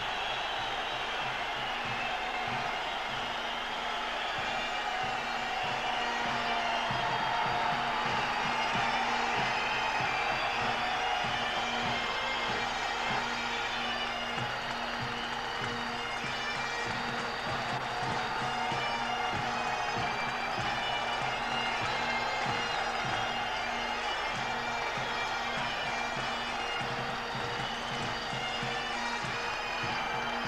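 Bagpipes playing a tune over steady drones, with a large crowd cheering throughout.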